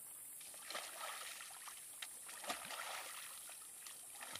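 Kayak paddle blade slapping and pressing on the water during low braces. A few soft splashes, about 0.7, 2 and 2.5 seconds in, sound over faint water trickle.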